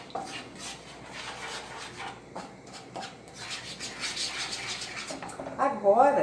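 Wooden spoon stirring and scraping around a nonstick frying pan of melted margarine, working a chicken stock cube until it dissolves, over a light sizzle. A brief louder sound comes near the end.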